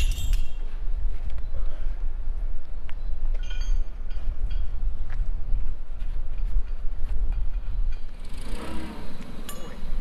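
A few light metal clinks from strap hardware being undone at a steel stand, one right at the start and another about three and a half seconds in, over a steady low rumble.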